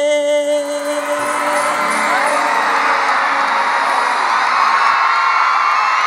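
The last held note of a sung song ends within the first second. A large concert crowd then cheers and screams, many high voices at once, and keeps it up steadily.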